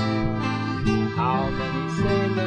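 Classical guitar strummed while a piano accordion holds sustained chords underneath, a folk sea-shanty accompaniment between sung lines.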